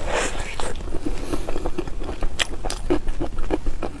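A close-up bite into a chocolate hazelnut mille-crêpe cake, a soft squish at first. Then chewing with the mouth closed, with frequent small crunchy clicks from the whole hazelnuts in the layers.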